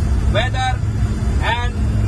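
Steady low drone of an aircraft's engines heard inside the cockpit, with a man's voice speaking two short phrases over it.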